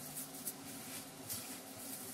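Faint squishing and rubbing of hands kneading a stiff grated bottle gourd and gram flour mixture against a stainless steel plate, with a few soft taps.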